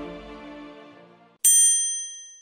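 Intro music fading out, then about one and a half seconds in a single high bell ding, struck once and left to ring away.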